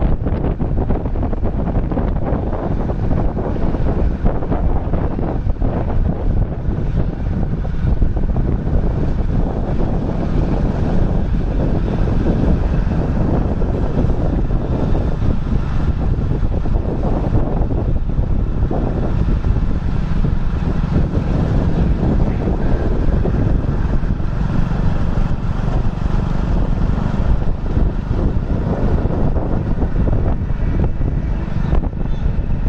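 Wind buffeting the microphone as a steady, loud low rumble.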